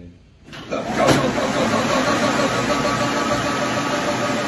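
Wattbike indoor trainer's fan flywheel spinning up under a hard out-of-the-saddle effort: a rushing whir that swells about half a second in, then holds loud and steady with a faint hum running through it.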